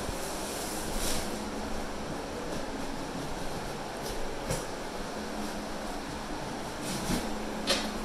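Electric drum fan running with a steady whoosh, blowing to dry out a flood-soaked, gutted room, with a faint low motor hum and a few faint knocks.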